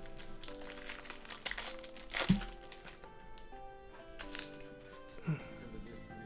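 Foil trading-card pack wrapper being ripped open, crinkling with several sharp crackles, the loudest about two seconds in, over quiet background music.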